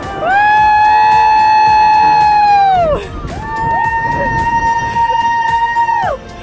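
Two long held high voice notes of about three seconds each, the second slightly higher than the first, each sliding down in pitch at its end, over music with a steady beat.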